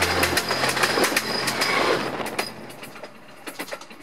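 Train running on rails, the wheels clicking over the rail joints, fading away over about two and a half seconds. The end of a music track cuts off about half a second in.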